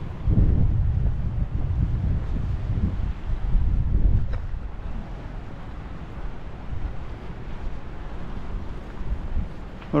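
Wind buffeting the camera's microphone in uneven gusts, heaviest for the first four seconds or so and then easing off.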